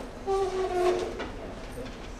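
A chair dragged across the stage floor, its legs giving a short pitched squeal that lasts about a second and drops slightly in pitch partway through.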